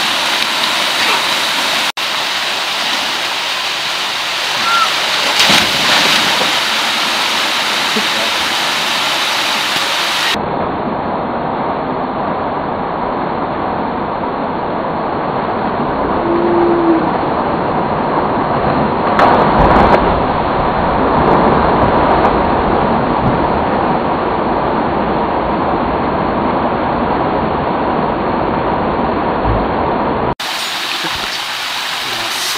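Loud, steady rush of a waterfall pouring into a rock plunge pool, with splashing as people slide down the falls into the water. The splashing surges louder about two-thirds of the way in.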